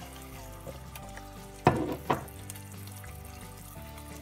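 An egg frying in butter in a cast iron skillet: a steady, low sizzle. Two sharp knocks about a second and a half and two seconds in.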